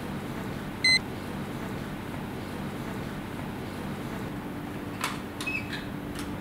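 A single short, high electronic beep about a second in, from a digital desk clock, over a steady low hum. Near the end come a few light clicks and knocks as things on the desk are handled.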